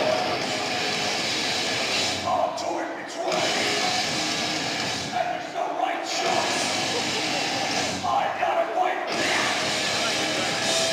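Loud, dense crowd noise with shouting voices in a packed hall, mixed with live metal band sound from the stage.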